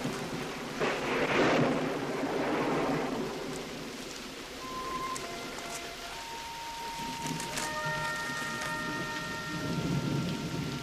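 Heavy rain falling steadily, with a rumble of thunder swelling about a second in. Soft held music notes come in about halfway and build to a sustained chord.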